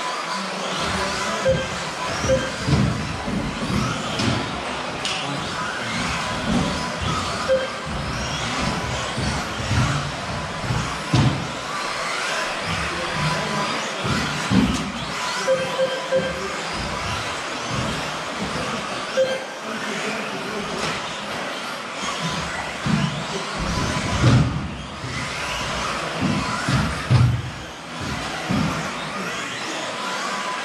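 Electric 1/10-scale 2WD off-road RC buggies racing on an indoor astroturf track: their motors and tyres run continuously, with irregular knocks, over background music.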